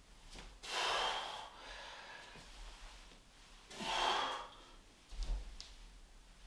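A man breathing hard through exertion during dumbbell squats and lunges: two loud, forceful exhalations about three seconds apart. A couple of short knocks come near the end.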